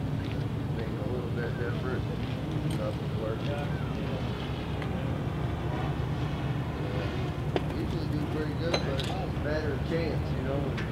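Indistinct voices talking over a steady low rumble, with two sharp clicks in the later part.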